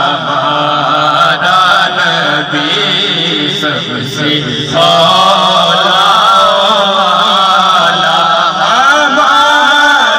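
A man reciting a naat, an Urdu devotional chant in praise of the Prophet, sung solo into a microphone in long held phrases whose pitch bends up and down. One phrase dies away a little before halfway, and the next begins at once.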